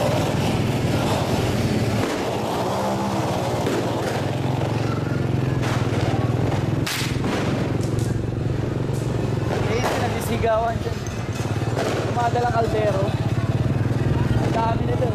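Street noise: people's voices calling and talking over a steady low engine hum, with a few sharp cracks around the middle.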